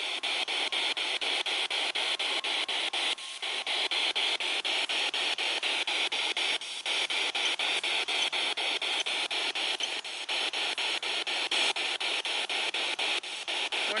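Spirit box sweeping through radio frequencies: steady static hiss broken by short, regular cuts about three times a second as it jumps from station to station.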